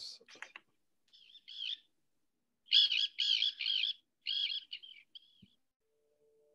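Bird calls from a film's soundtrack: short runs of repeated high notes, starting faintly and loudest about three seconds in, then trailing off.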